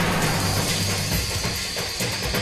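Dramatic background score: low sustained tones, with a high held note coming in just under a second in.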